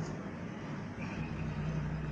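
Steady low background hum with no distinct event.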